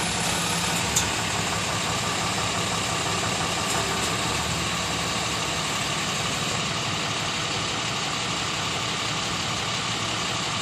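Tow truck engine idling steadily, with one short click about a second in.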